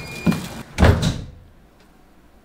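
Metal apartment front door shutting: a knock, then a heavy thud about a second in. Thin electronic tones from the digital door lock sound at the start.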